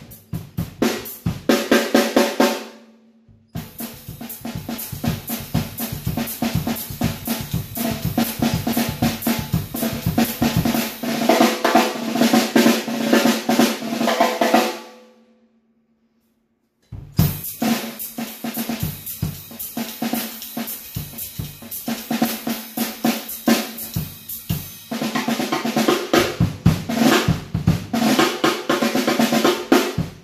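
Premier Olympic 5.5x14 chrome-over-steel snare drum on the heads it came with, played with sticks: fast strokes and rolls over a ringing drum note. The playing breaks off briefly about three seconds in, and again about halfway, where the drum rings out and fades away before the strokes start again.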